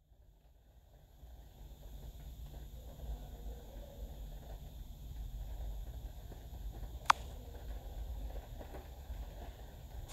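Faint low rumble of a phone microphone being handled, after about a second of dead silence from a dropout in the stream. One sharp click comes about seven seconds in.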